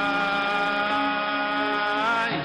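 A singing voice holding one long, steady note in a praise song to God, over backing music.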